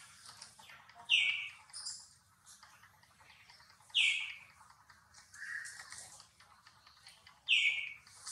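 Newborn macaque crying: three short, high-pitched calls that fall in pitch, about three seconds apart, with a lower, softer call between the second and third.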